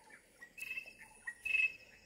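Outdoor wildlife sounds: two short, high chirping bouts about a second apart, over a faint, steady insect trill.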